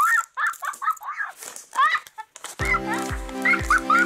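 Rapid, repeated clucking calls, part of a background music track; a steady beat comes in about two and a half seconds in.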